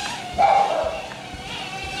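Holy Stone HS190 micro drone's tiny propellers buzzing steadily in flight, a thin high whine. About half a second in, a louder short sound cuts in over the buzz and fades within half a second.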